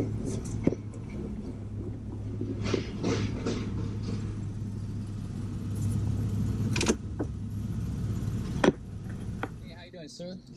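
A Jeep's engine idling steadily as it creeps forward in a queue, heard from inside the cab, with a few sharp knocks, the loudest near the end.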